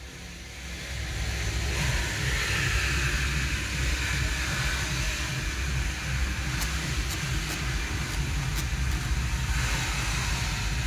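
Climate-control blower fan of a 2013 Volkswagen Golf switched on inside the cabin, building within a couple of seconds to a steady rush of air from the dash vents over a low rumble. A few light clicks of the control buttons come in the second half.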